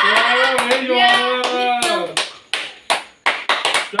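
A person's long held cry for about the first two seconds, then hands clapping, several claps at an uneven pace of about three to four a second.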